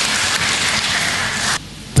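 Audience applauding, an even patter of many hands clapping that cuts off suddenly about one and a half seconds in.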